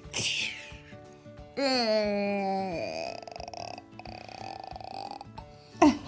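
A child's voice making a growl for a play fight between toy cats: one loud growl about a second and a half in, about a second long and falling in pitch, with quieter sounds around it. Soft background music runs underneath.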